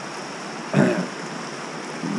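A fast-flowing moorland river rushing steadily over rocks and stepping stones. A short throat-clearing sound comes about a second in.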